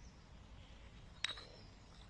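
A single light click about a second in, as a small ceramic hen-shaped lid is set down on the soil, over a faint low rumble.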